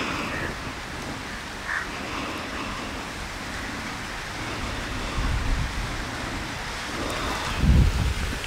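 Steady outdoor noise of wind on the microphone, with low buffeting rumbles swelling about five seconds in and again near the end.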